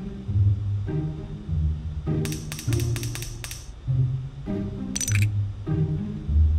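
Online slot game's background music with a bouncing bass line and chords. About two seconds in, a quick run of bright clicking sound effects plays over it, and a shorter bright burst follows near the end.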